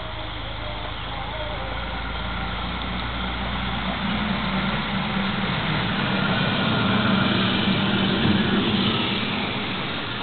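A passing vehicle's engine running, getting louder to a peak about seven or eight seconds in, then fading.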